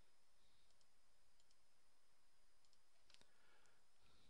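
Faint computer mouse clicks, a few short pairs spread over the seconds, against near-silent room tone with a faint high steady whine.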